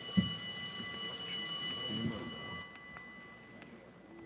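A steady, high buzzer-like tone with overtones sounds for about two and a half seconds, then fades out, as the session is closed. A thump comes just after it starts.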